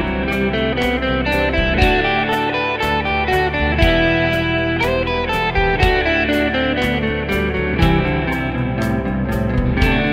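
Electric guitar playing single-note scale runs through the E minor (G major) diatonic scale, moving up the neck from one position to the next. Under it is a backing track with a steady drum beat and a chord progression.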